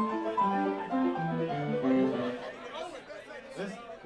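Yamaha electronic keyboard playing a quick phrase of single notes stepping up and down for about two and a half seconds, then men's voices talking near the end.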